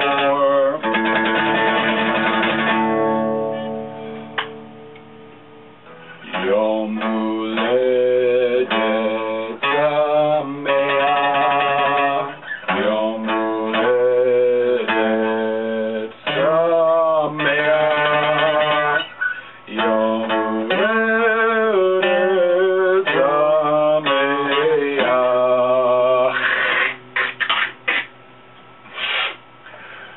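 Acoustic guitar played as a song accompaniment, chords ringing with a steady pulse; twice the sound dies away and fades, about four seconds in and near the end, before the playing picks up again.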